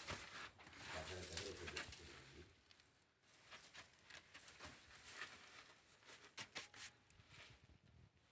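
Pigeon cooing for the first two seconds or so, low and repeated. After that it is quiet, with scattered faint clicks and taps.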